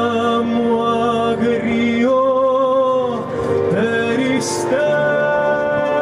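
Live music: a male voice singing long, wavering held notes over an accompaniment of guitars and other plucked strings.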